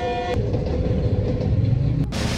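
Passenger train's horn sounding and cutting off about a third of a second in, then the steady noise of the train's carriages running past.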